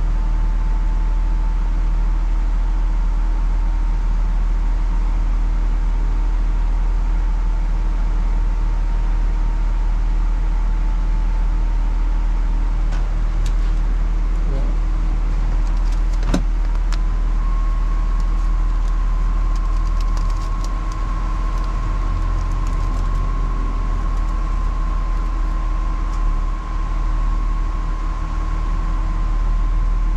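Car idling in place, a steady low rumble heard from the cabin, with a faint steady whine that steps up a little in pitch about halfway through. A few light clicks fall just before the step.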